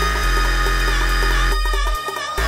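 Dubstep music: a deep sustained sub-bass that steps to a new note about a quarter second in, under held high synth tones and a regular light percussive pattern. The bass drops out briefly near the end.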